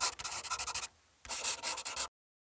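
Two bursts of scratchy rubbing noise, the first about a second long, then a short pause and a second, slightly shorter burst.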